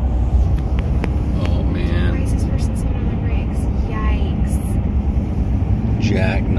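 Steady low rumble of road and engine noise inside a car moving at highway speed, with faint voices now and then.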